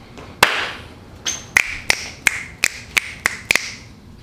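A single sharp click, then a regular run of about eight sharp clicks, roughly three a second.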